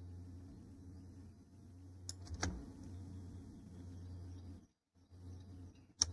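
Faint steady low hum of room and microphone noise, with two short clicks about two seconds in, typical of a computer mouse clicking. The hum cuts out briefly near the five-second mark.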